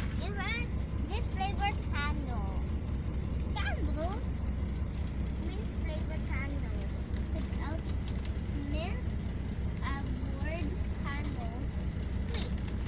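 Steady low rumble of a moving bus heard from inside the passenger cabin, with scattered quiet voices over it.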